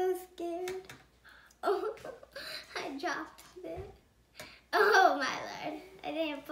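A young girl's voice: a held sung note just after the start, then unclear chatter to herself.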